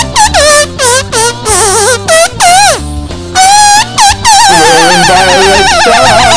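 Blues-rock music: a lead line in short phrases that slide up in pitch and waver heavily, over a steady bass line.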